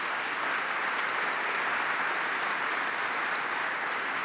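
Audience applauding steadily, interrupting the speech.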